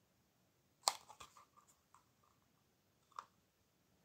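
Small handling noises from a plastic drive enclosure and its rubber strap being flexed by hand: a sharp click about a second in, a few faint ticks just after it, and another small click near the end.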